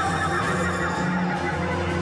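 Dramatic background score, with a creature's cry mixed into it as the monster emerges.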